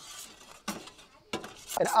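Metal pizza peel clinking against the Ooni Karu 12 oven as a pizza is slid in and drawn back out, a few short sharp clinks.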